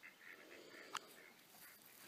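Near silence: faint outdoor background, with one short click about a second in.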